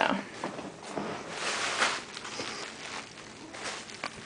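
Soft rustling and handling noise, with a louder rustle about a second and a half in.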